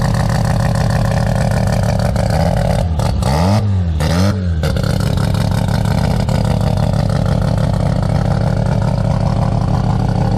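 A tube-frame buggy's engine idling steadily, blipped twice in quick succession about three seconds in, the pitch rising and falling with each rev.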